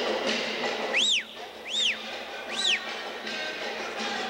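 Three high whistles about 0.8 s apart, each sweeping up and back down in pitch, over capoeira music with percussion.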